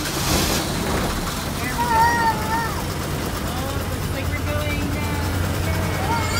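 A local bus's engine running with a steady low rumble, just restarted after stalling. Voices call out over it about two seconds in.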